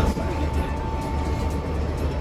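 Light-rail tram running, with a steady low rumble and a thin steady whine that fades out near the end, under background music.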